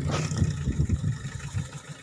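Gusty wind from a passing dust devil buffeting the microphone: a low, irregular rumble that fades toward the end.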